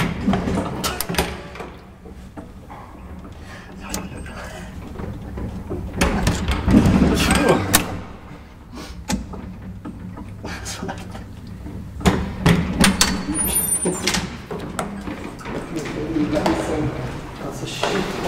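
Old gated traction elevator: a steady low hum from the car in the shaft, with clunks and rattles as the car's folding steel-bar gate is unlatched and slid open and the landing door is swung open.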